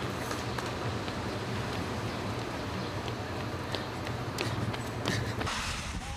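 Steady low rumble of a vehicle engine with road noise, and a few faint clicks. Just before the end the rumble drops away and a brighter hiss takes over.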